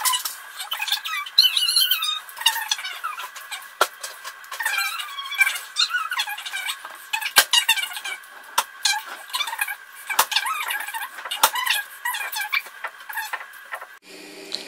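Fast-forwarded kitchen sounds of food being prepared: high, squeaky, warbling chatter with frequent sharp clicks and clatter, the whole sound pitched up with no low end.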